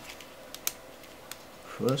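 Three small, sharp clicks of the LCD panel's metal and plastic parts being handled, the loudest about two-thirds of a second in.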